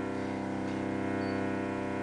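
Cello bowed on a long, steady sustained note, one unchanging pitch rich in overtones.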